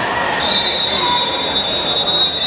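Referee's whistle: one long, steady, high whistle blast starting about half a second in and held, the signal for backstroke swimmers at the wall to take their starting position.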